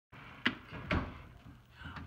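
Two short knocks about half a second apart, with a faint rustle between them, as hands move on a wooden tabletop.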